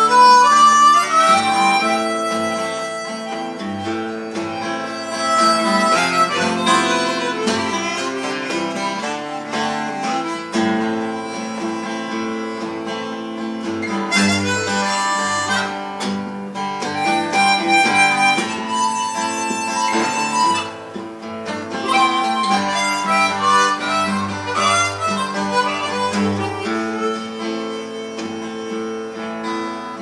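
Harmonica and archtop guitar playing together in an instrumental intro: the harmonica's reedy held and bending notes ride over the guitar's chords.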